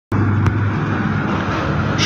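Steady, loud low rumbling noise with a click about half a second in.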